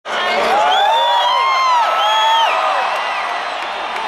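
Large concert crowd cheering and whooping, many voices overlapping and rising and falling in pitch, easing off toward the end.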